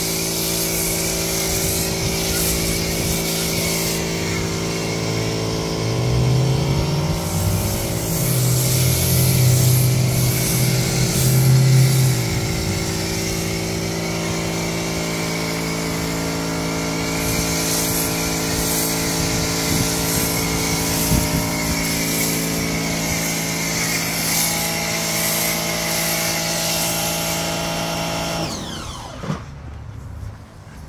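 Pressure washer running with a foam cannon, a steady motor hum under the hiss of the foam spray. Near the end the spray stops and the motor winds down with a falling whine.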